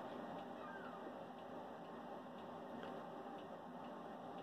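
Quiet room tone: a steady faint hiss, with one faint, short, bending call about a second in.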